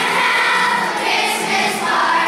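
Children's choir singing, holding long notes that change to a new pitch about a second in.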